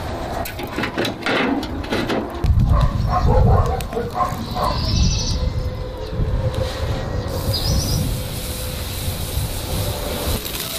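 Charcoal fire crackling with sharp clicks, then thuds and brief metallic ringing as a round steel grill grate is set down onto the fire pit's steel ring. A bird chirps twice.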